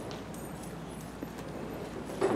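Room noise with a low hum and a few light clicks and taps scattered through it.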